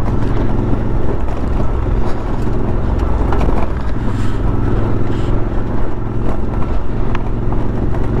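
Suzuki V-Strom motorcycle running at a steady pace on a loose gravel road: a continuous engine drone mixed with the rumble of tyres over stones.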